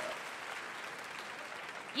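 Audience applauding steadily. A voice begins just at the end.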